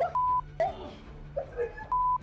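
Two short censor bleeps, each a steady beep of about a quarter second, one just after the start and one near the end, masking swear words in the fight footage. Faint voices are heard between them.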